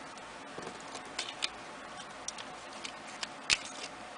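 Scattered small clicks and soft rustles of fingernails picking stick-on gems off their plastic backing sheet, with the sharpest click about three and a half seconds in.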